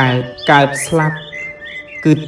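A man's voice talking over soft background music, followed in the second half by a few short, high bird chirps.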